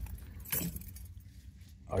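Handling noise from a handheld camera being moved along a framed wall: a short, high rustle with a light jingle about half a second in, then faint clicks over a low rumble.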